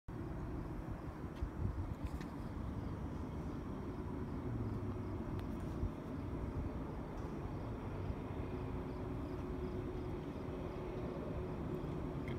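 Distant diesel freight locomotives laboring under load: a steady low rumble with a faint steady hum.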